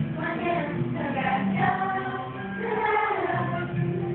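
Children's choir singing a song with long held notes.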